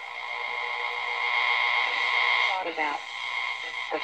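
Zenith Trans-Oceanic H500 tube radio being tuned between stations: its speaker gives a steady hiss with high, whistling interference tones. A brief warbling snatch of a voice comes about two and a half seconds in.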